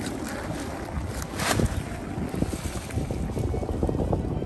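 Wind buffeting the microphone in a steady low rumble, with a brief louder gust about a second and a half in.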